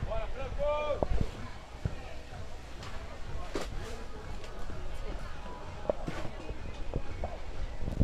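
Beach tennis rally: paddles strike the ball with a few sharp knocks, and a short shout comes about half a second in, with the voices of players and spectators around the court.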